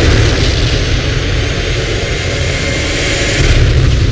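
A sudden loud cinematic hit that runs into a steady, deep roaring rumble, a trailer sound effect, which gives way to music right after.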